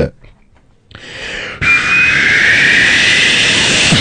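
A man's voice making a long loud hiss into the microphone. It fades in about a second in, jumps louder about halfway through and holds steady, opening a beatboxed piece.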